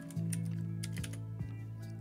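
Computer keyboard keys clicking in a few scattered keystrokes as code is typed, over quiet background music.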